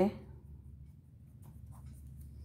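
Pen writing on paper on a clipboard: faint scratching strokes as a word is written out.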